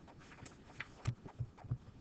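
Faint soft knocks and small clicks, with three low knocks in quick succession, about a third of a second apart, in the second half.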